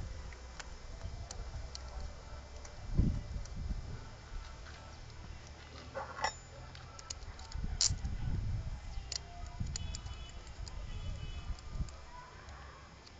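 Scattered light metallic clicks and knocks of parts and tools being handled on a Fiat Uno gearbox casing, with a duller knock about three seconds in.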